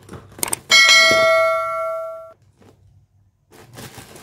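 A subscribe-button sound effect: a couple of soft clicks, then a single bright bell ding that rings out and fades over about a second and a half. Faint rustling of the box being handled starts near the end.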